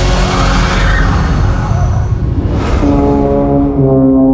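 Dark, loud film-score music: a deep drone thick with noise, a brief rushing sweep about two and a half seconds in, then a held low brass chord entering near the end.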